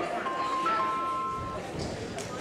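Mobile phone ringtone: a short electronic melody of two steady beeping notes, over the murmur of a gym.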